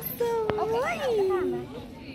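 A young child's voice in drawn-out, wordless calls that hold a pitch and then rise and fall, with a single sharp click about half a second in.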